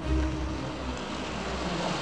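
A car driving past on a street, a rush of engine and road noise with a low rumble that swells just after the start, under soft background music.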